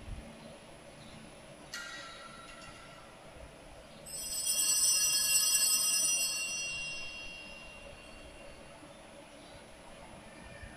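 High-pitched church bell ringing: one light strike about two seconds in, then a louder, longer peal of several clear tones about four seconds in that fades away over the next few seconds.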